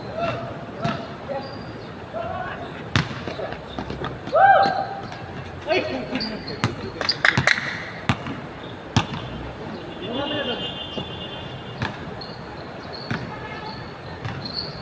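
A basketball bouncing on a hard court several times at irregular intervals as players move the ball around, with players' voices calling out between the bounces.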